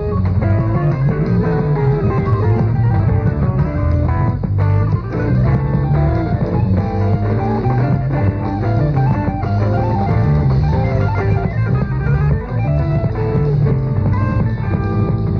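Rock band playing live: electric guitar, bass guitar and drum kit, continuous and loud, with the top end cut off as in an old radio broadcast recording.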